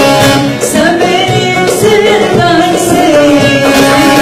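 A woman singing a Turkish folk song (türkü) in an ornamented, gliding melody, accompanied by a folk ensemble with plucked long-necked lutes (bağlama) and a steady rhythmic beat.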